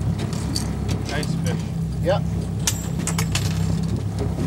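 A houseboat's motor running at a steady low hum while trolling, with brief voice fragments and a few sharp clicks about three seconds in.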